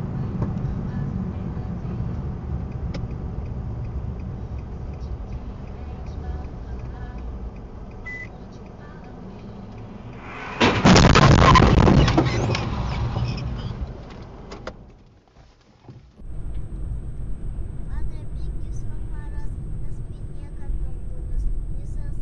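Car cabin and road noise from a dashcam, then about halfway through a sudden loud collision noise lasting about two seconds that fades out over the next few seconds. After a short near-silent gap, steady driving noise resumes.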